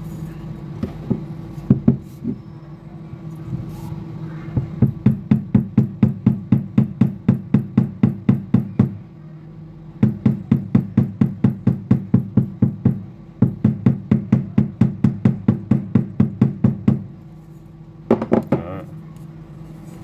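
Rapid light tapping of a wooden hammer handle against the inside of a dented aluminium Bang & Olufsen speaker grille, about four taps a second in three runs, beating the dent back out. A few separate knocks come first.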